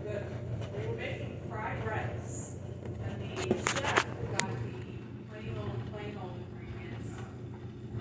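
A quick run of sharp plastic clicks and knocks about three and a half to four and a half seconds in, from the detergent bottle and measuring cup being handled, over faint muffled speech and a low steady hum.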